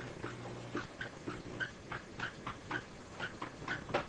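Writing implement drawing strokes on a lecture board: a quick run of short squeaks and scrapes, about three a second, as a diagram is drawn by hand.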